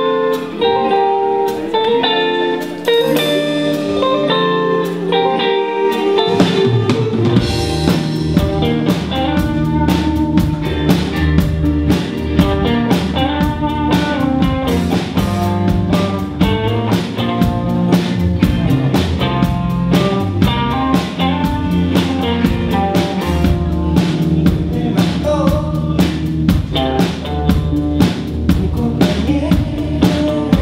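Live indie rock band: electric guitars play a melodic figure alone, then about six seconds in the bass and drum kit come in with a steady beat and the full band plays on.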